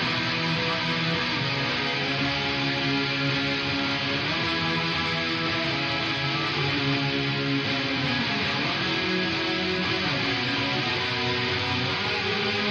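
Soloed electric guitar track from a rock song's bridge, playing sustained, heavily effected chords that shift about every four seconds.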